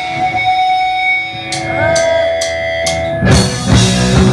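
Live punk band: amplified guitar feedback rings while four sharp clicks count in, about two a second, then drums, distorted guitar and bass come in together a little over three seconds in.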